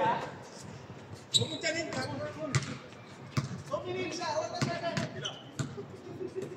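A basketball bouncing on an outdoor hard court, a handful of separate bounces, with players' voices calling out over it.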